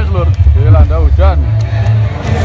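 Loud, bass-heavy band music over an outdoor PA system, with a raised voice singing or calling over it.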